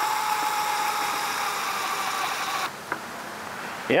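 Cordless drill driver running steadily through a Gator Grip universal socket, driving a small eye bolt down into wood. Its whine sinks slightly in pitch as the bolt seats, then cuts off about two-thirds of the way in, followed by a single click.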